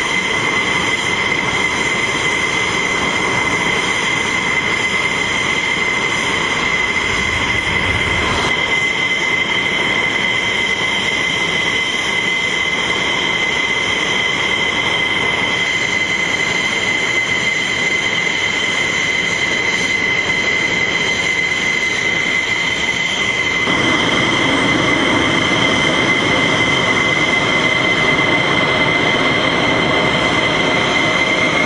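Pratt & Whitney F100 turbofan of a taxiing F-16 fighter: a steady high-pitched whine with one strong constant tone over a rushing jet noise. About three-quarters of the way through it grows louder and fuller.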